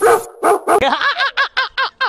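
A dog barking rapidly, about six barks a second, each bark rising and falling in pitch. The barking starts shortly after a brief loud burst at the beginning.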